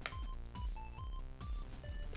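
Quiet background music: a simple electronic, video-game-like melody of short notes stepping up and down over a soft beat of about two pulses a second.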